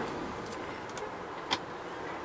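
Cabin noise of a MAN TGE van with its 177 hp 2.0-litre diesel, cruising at motorway speed: a steady blend of engine, tyre and wind noise. A sharp click about one and a half seconds in.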